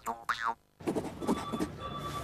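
The closing sound of a TV advert, a short sliding-pitch jingle, cut off about half a second in. After a brief silence comes a faint room background with a thin steady high tone.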